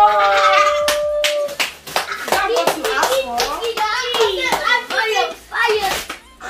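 Children's excited voices: a long drawn-out exclamation at the start, then rapid squeals and calls, mixed with a flurry of sharp hand claps and slaps.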